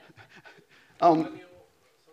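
Speech in a lecture hall: faint talk in the first second, then a short, loud vocal sound about a second in, such as a breathy 'yeah' or a brief laugh.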